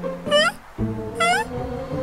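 Cartoon background music with two short, squeaky calls that glide upward in pitch, about a second apart.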